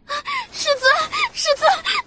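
A voice actor's high-pitched crying in the voice of a distraught young woman: about six short, gasping, sobbing cries in quick succession.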